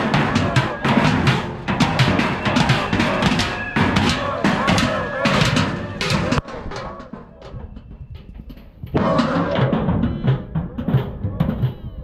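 Sticks beating on metal barrels in a fast, dense clanging drum-like racket. It drops away about six seconds in and comes back loud for the last three seconds.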